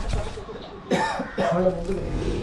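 A person's voice with a sudden cough-like burst about a second in, followed by short voiced sounds.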